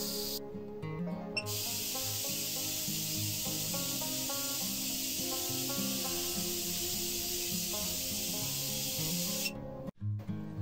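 High-voltage corona discharge of a homemade multistage ion thruster, a steady high hiss that breaks off about half a second in, comes back a second later, and stops just before the end. Background music plays underneath.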